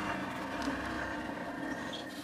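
Steady mechanical running noise, an even hum and hiss with no sudden events.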